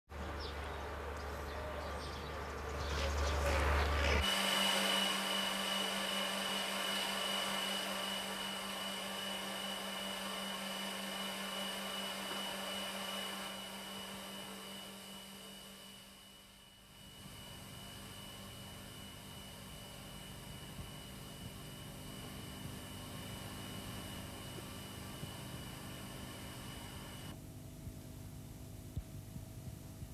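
Steady machinery hum inside the Kozloduy nuclear power plant, with a constant high whine over a lower drone. The sound changes abruptly about four seconds in, from a heavier low rumble, and drops to a quieter drone a little past the middle.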